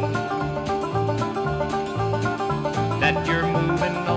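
Country accompaniment: acoustic guitar and banjo picking over a steady bass line, between sung lines.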